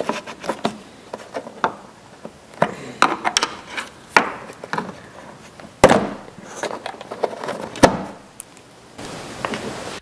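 Flat-blade screwdriver prying up the center pin of a plastic push-type retaining clip and the clip being worked out: a string of sharp plastic clicks and taps, the loudest about six and eight seconds in, followed by a steady hiss in the last second.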